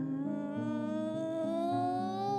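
A woman's voice holding one long hummed note that slowly rises in pitch, over soft background music.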